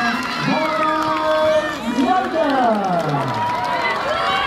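Voices at a football pitch, players and spectators shouting and calling over one another, with one long falling cry about two seconds in.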